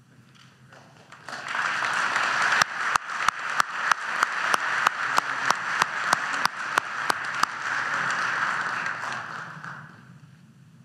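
Audience applause that swells in about a second in and dies away near the end, with one person's claps close to the microphone standing out sharply, about three a second, through the middle of it.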